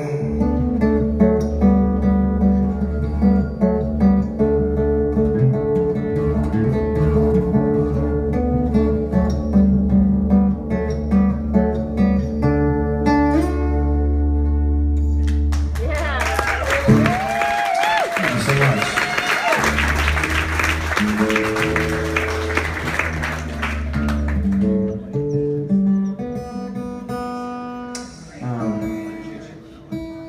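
Solo steel-string acoustic guitar playing with a full, ringing bass for the first half. About halfway through, audience applause and cheering with a high whoop swells over it for some eight seconds, and the guitar carries on alone afterwards.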